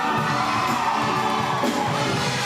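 Audience cheering over the show choir's instrumental accompaniment, which goes on with held notes underneath.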